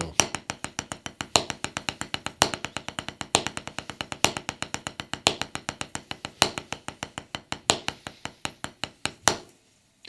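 Drumsticks playing a triple paradiddle on a rubber practice pad set on a snare drum: a fast, even stream of strokes with a louder accented stroke about once a second. The strokes stop shortly before the end.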